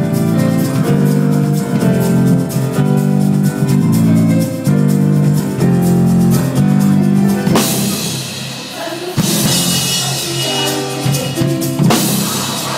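Live band playing a gospel song, with two drum kits driving the groove under sustained bass and chord tones. About seven and a half seconds in, a cymbal wash swells, and the band cuts out briefly just after nine seconds before coming back in.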